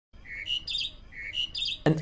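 A bird singing in the mating season: a short, fast phrase sung twice, each time a lower whistled note followed by a quick run of higher notes.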